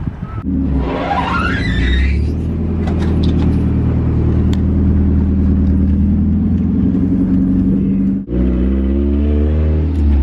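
Mazda Miata's four-cylinder engine pulling the car along, heard from inside the cabin. It runs at a steady pitch, drops out briefly near the end as a gear is changed, then climbs in pitch as the car accelerates again.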